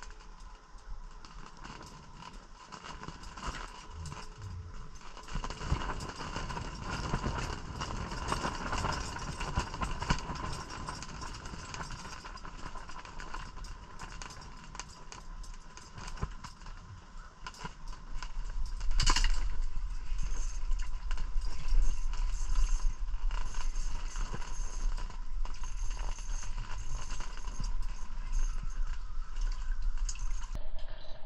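Close handling noise of ice-fishing gear: rustling and light clicks from the rods, reel and clothing as two rods are jigged. There is one sharp click about two-thirds of the way through, after which the handling gets louder, with a faint steady high tone throughout.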